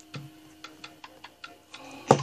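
Rapid light ticking, about four to five ticks a second, over a faint steady hum.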